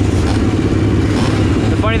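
Honda XR600R's big air-cooled single-cylinder four-stroke engine idling steadily at the starting gate, a deep, even rumble with no revving.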